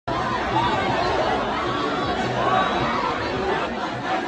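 Large crowd talking at once: a steady hubbub of many overlapping, unintelligible voices.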